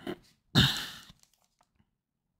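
A brief rustle of a foil trading-card pack being picked up and handled, about half a second in.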